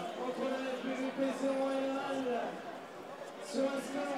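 Stadium ambience of men's voices calling and talking across the pitch, with one long drawn-out call in the first half.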